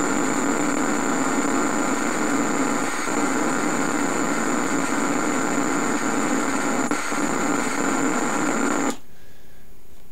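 Shazizz coil, a homemade Tesla coil, running: a steady electrical buzz and hiss with a thin high whine over it. It cuts off abruptly about nine seconds in.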